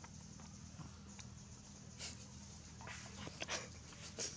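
Faint forest ambience: a steady high-pitched insect buzz, with a few short soft rustles in the second half.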